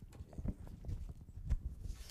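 Irregular knocks and bumps as laptops are handled and swapped at a lectern, picked up by the podium microphone, with the loudest thumps about half a second and a second and a half in.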